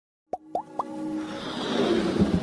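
Three quick rising electronic pops about a quarter second apart, then a swelling whoosh building up over a held musical tone: the sound effects of an animated logo intro.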